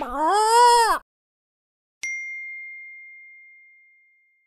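The last part of a rooster's crow: one pitched call that rises and then falls, lasting about a second. About two seconds in comes a single bright ding that rings out and fades away.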